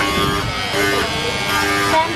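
Electric table fan's motor running with a steady electric buzz, with people's voices over it.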